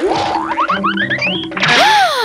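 Comedy cartoon sound effects over background music: a quick run of short rising whistle-like glides, then a longer swooping tone that rises and falls near the end.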